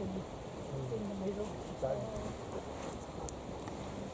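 Faint voices of people talking a little way off, in two short stretches, over steady outdoor breeze noise.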